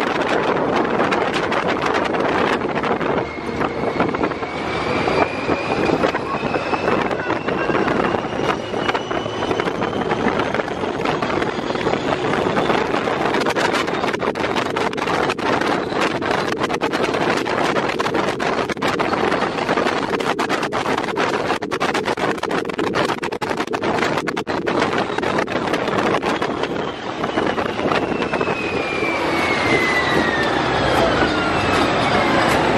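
Open-topped Test Track ride vehicle running at high speed on its outdoor loop: a loud, steady rush of wind and running noise, with wind buffeting the microphone. A whine climbs in pitch over the first dozen seconds as the vehicle speeds up, and a falling whine comes near the end.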